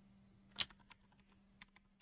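Computer keyboard keys being typed: a quick run of faint keystroke clicks starting about half a second in, the first one the loudest.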